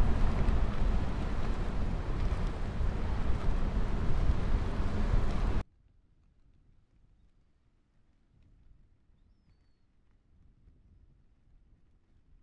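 Strong wind buffeting the microphone, a loud steady rush heaviest in the low end, which cuts off suddenly about halfway through to near silence.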